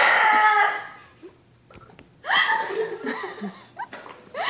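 People laughing: a loud burst of laughter at the start, a short lull, then more laughter a couple of seconds in.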